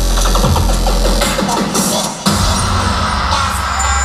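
Loud electronic bass music from a live DJ set over the venue's PA system, heard from within the crowd. The heavy bass thins out for a moment and then comes back in sharply about two seconds in.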